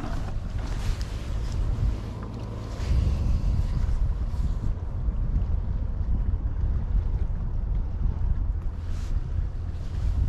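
Wind buffeting the microphone: a low, gusty rumble that gets louder about three seconds in, with a few faint clicks.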